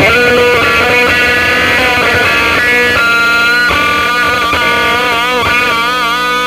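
Electric guitar playing a blues lead: long held notes, with wavering, bent notes toward the end.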